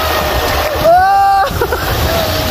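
River water rushing and splashing around an inflatable tube running shallow rapids, with steady rumbling noise on the microphone. A single voice-like note rises and is held for under a second, about midway.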